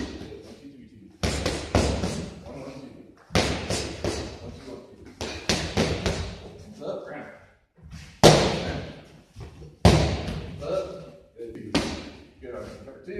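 Punches smacking into focus mitts in quick combinations of two to four strikes, a new combination about every two seconds, each hit echoing in a large hall.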